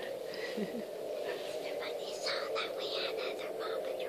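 A young girl whispering excitedly in short breathy bursts, with laughter about a second in.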